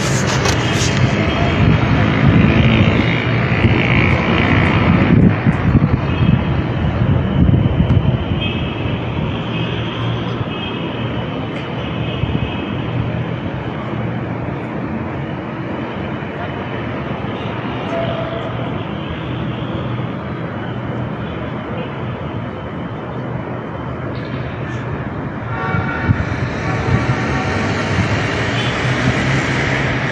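Loud, steady outdoor rushing noise on a phone microphone, rougher and busier in the first several seconds. Faint voices come through now and then, and again near the end.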